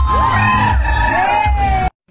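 Loud dance music with a heavy, regular bass beat and a voice holding a long note over it; it cuts off suddenly near the end.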